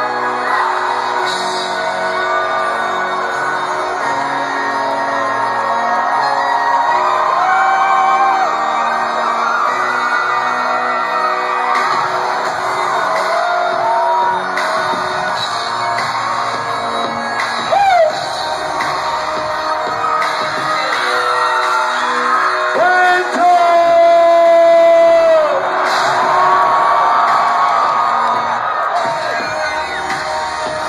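Live concert music through a large hall's PA, with wordless sung lines gliding up and down and a long held note near the end, as the crowd cheers and shouts.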